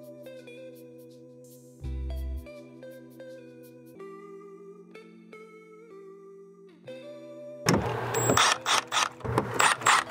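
Soft guitar background music, joined about eight seconds in by a much louder cordless Milwaukee Fuel driver running as it drives a receptacle mounting screw into the wall box.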